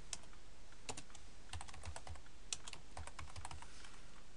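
Computer keyboard being typed on: a couple of keystrokes about a second in, then a quicker run of key clicks from about a second and a half until near the end.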